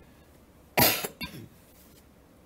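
A person coughs: one loud, sharp cough, then a shorter, softer one right after it.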